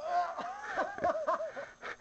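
A person laughing: a high, wavering voice that starts suddenly and breaks into quick pulses of laughter, about four a second.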